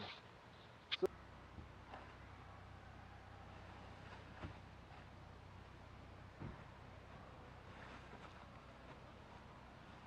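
Quiet outdoor ambience with a steady low hum, broken by a sharp click about a second in and a few faint soft knocks later on.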